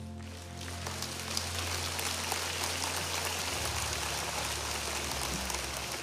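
A large audience applauding, an even patter, over soft sustained background music.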